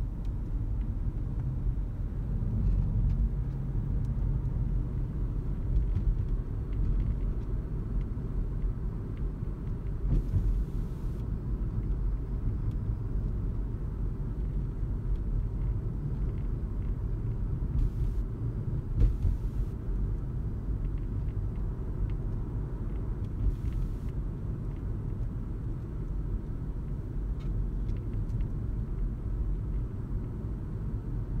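Low, steady rumble inside the cabin of a moving Toyota Auris Hybrid, with a few brief faint hisses along the way.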